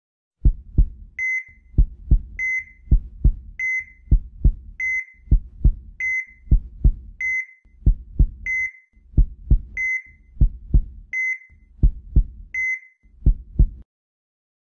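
Sound-effect heartbeat, a low double thump repeating about every 1.2 seconds, with a heart monitor's short high beep after each beat. It stops near the end.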